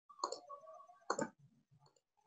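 Two faint computer mouse clicks about a second apart, with a faint steady tone between them.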